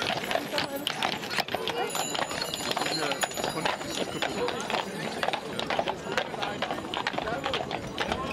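Hooves of heavy draft horses clopping on cobblestones as they are led at a walk, with many irregular hoof strikes, over a background of crowd voices.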